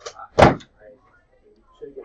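A single loud thump or bang about half a second in, sharp at the start and dying away quickly, with a few quiet spoken words around it.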